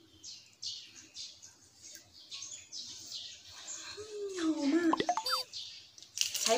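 Short, soft crackles and rustles of a grilled shrimp's shell and meat being pulled apart by hand. About four seconds in a short hummed vocal sound rises over it, and near five seconds come a sharp click and a few quick rising chirps.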